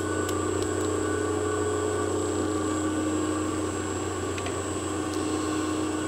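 Four 5-horsepower three-phase motors running steadily under load, two on the 60 Hz mains and two fed by a 30 horsepower variable frequency drive at 65 Hz: an even electrical hum with a thin, high, steady whine over it. A few faint clicks sound over the hum.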